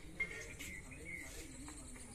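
A dove cooing softly, one low, wavering call through the second half, with a few short high bird chirps and a brief tap near the start.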